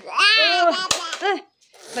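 A young child's high-pitched, wordless vocalising with pitch sliding up and down, with a single sharp click about halfway through.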